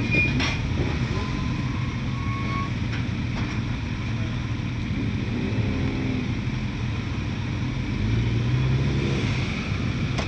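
Steady low rumble of idling motorcycle engines, swelling louder near the end as more motorcycles ride down the slipway towards the ferry.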